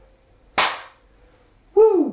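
A single sharp hand clap about half a second in, then, after a one-beat wait, a short shouted vocal 'woo' that rises and falls in pitch near the end.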